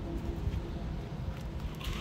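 Wind rumbling on the microphone, uneven and low, with a short hiss near the end.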